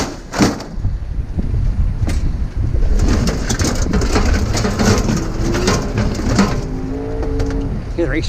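Scrap being thrown from a trailer onto a scrap-yard pile: a knock, then a dense run of clattering knocks and bangs over a steady low machinery rumble. A short steady two-note pitched sound comes near the end.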